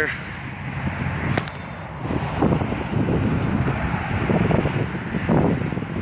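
Outdoor roadside noise: wind buffeting the phone microphone in irregular gusts over a low steady hum of traffic, with a single faint click about a second and a half in.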